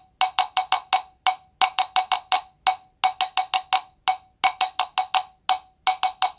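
A tubular wood block struck with a wooden stick, playing a rhythmic ostinato built on sixteenth notes: a quick run of clear, pitched clicks followed by a single stroke after a short gap, the cell repeating about every 1.4 seconds.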